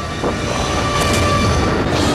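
Film sound effect of a missile-silo fuel explosion: a loud, rumbling roar of fire that swells about a quarter of a second in and stays loud, with sharper crackles around the middle.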